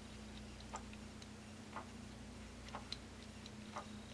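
Faint, evenly spaced ticks about once a second over a low steady hum of room tone.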